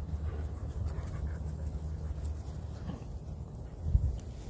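A dog panting over a steady low rumble, with a short thump near the end.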